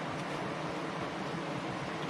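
Steady rush of river water flowing over a low concrete weir, an even hiss with no breaks.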